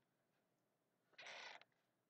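Near silence: room tone, with one brief soft noise a little past a second in.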